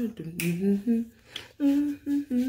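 A woman singing short sung notes under her breath, with sharp snap-like clicks about a third of a second in and again past the middle.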